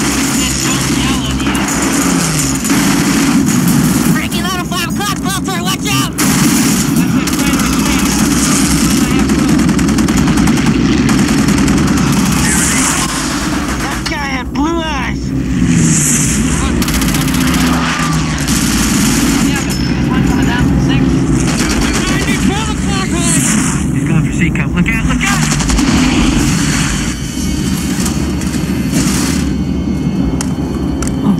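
Film battle soundtrack: bursts of heavy machine-gun fire from a B-17's waist guns over the steady drone of the bomber's piston engines, with fighter planes sweeping past in pitch-gliding whines, once about four seconds in and again near the middle, and shouting voices mixed in.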